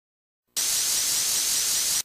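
Steady hissing, static-like cartoon sound effect that starts about half a second in after silence, with a faint rising chirp repeating high in it. It breaks off briefly right at the end.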